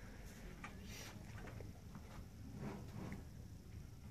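Faint, scattered taps and rubs of the Ubiquiti airFiber 24HD's plastic housing and metal mounting bracket as the radio is handled and turned around, over a low steady room hum.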